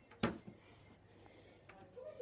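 A single sharp knock about a quarter second in, with a fainter tap just after, against quiet room tone.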